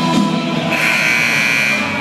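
Gymnasium scoreboard buzzer sounds once, starting about two-thirds of a second in and lasting a little over a second, over music playing in the gym.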